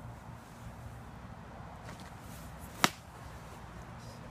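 A golf iron striking a ball off an artificial-turf tee mat: one sharp, short click nearly three seconds in.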